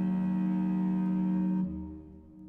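A Baroque ensemble holds a sustained chord, which is released about a second and a half in, and its reverberation fades away.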